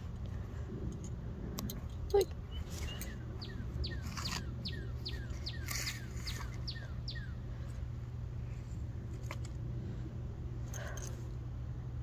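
A bird calling a run of about a dozen quick falling notes, two or three a second, for about five seconds in the first half. Under it runs a steady low rumble, with a few faint clicks.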